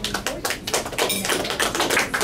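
Hands clapping: a run of quick, sharp claps.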